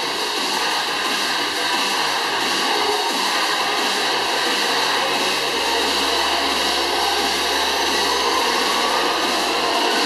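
A steady whirring, like a motor or fan, with music playing underneath.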